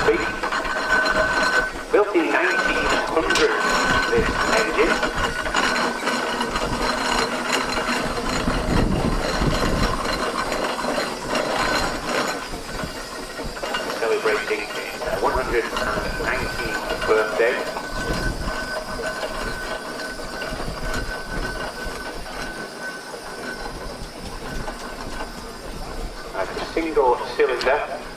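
General-purpose steam traction engine running past at slow speed, its steam engine and gearing working steadily with a hiss of steam.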